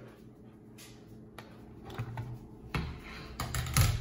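Scattered light clicks and taps of hands handling things on a wooden tabletop, sparse at first and busier in the second half.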